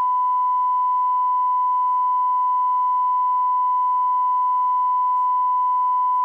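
Broadcast line-up tone: a steady 1 kHz sine tone at constant level, sent on the programme-sound feed between the spoken channel idents while proceedings are paused.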